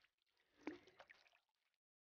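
Near silence, with one faint, short splash of water about a third of the way in, followed by a couple of fainter drips, as boiled pig skin sits in a basin of cold water.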